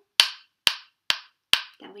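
Two wooden sticks struck together four times at an even pace, about two strikes a second, tapping out the rhythm of the words "shoo-ba-dee-doo". A short spoken word follows near the end.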